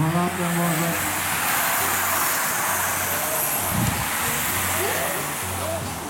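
Racing bicycles sprinting past across a finish line: a rushing noise that swells through the middle and fades, over a low pulsing hum, with a brief voice at the start and near the end.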